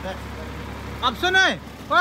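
Steady low hum of a diesel engine running at low speed, with a man shouting briefly about a second in.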